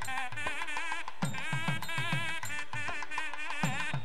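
South Indian wedding music: a buzzy, wavering nadaswaram melody with ornamented pitch bends over quick, repeated thavil drum strokes.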